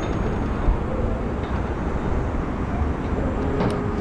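Steady outdoor city ambience: an even, low rumble of distant traffic.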